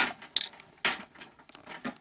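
A few short, sharp clicks and rustles, one slightly longer about a second in, with small ticks near the end.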